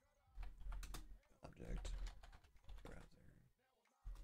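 Typing on a computer keyboard: a faint run of quick keystrokes.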